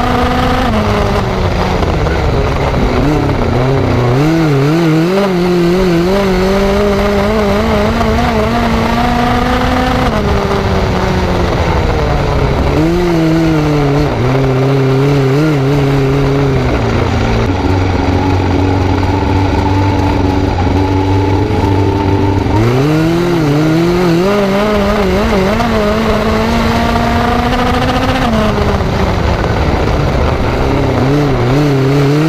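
GM Ecotec four-cylinder engine of a dirt-track midget race car heard from the cockpit at racing speed, its pitch climbing on the straights and falling into the turns over several laps. Midway the pitch drops and holds low and steady for a few seconds, then climbs again.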